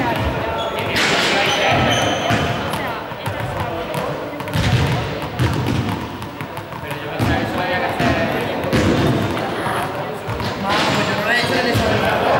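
Small balls bouncing on a hard sports-hall floor, repeated short thuds with echo, over background voices in the hall.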